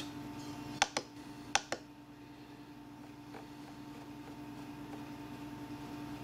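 A few sharp plastic clicks from the RadioMaster TX16S transmitter's controls as letters are entered, in two quick pairs about a second in, then one faint click, over a steady faint hum.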